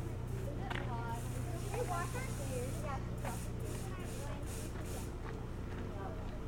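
Faint, indistinct voices of people talking at a distance, over a steady low hum.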